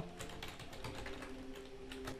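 Computer keyboard being typed on: a quick run of light key clicks, with a faint steady hum beneath.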